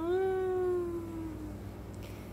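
A baby's long, drawn-out vocal 'aah' coo, one held note that sinks slightly in pitch and fades.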